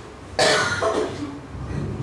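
A person coughing, a sudden sharp cough about half a second in that fades within a second.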